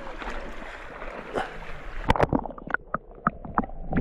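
Shallow, clear river water rippling over gravel, then splashing and gurgling as a hand scoops at it. About two seconds in the sound turns muffled, as if heard at or under the water surface, with a run of short sharp splashes.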